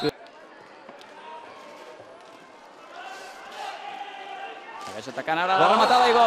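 Roller hockey rink ambience: a low hall murmur with faint knocks of sticks and ball on the rink floor. About five seconds in, loud excited shouting breaks out as the equalising goal goes in.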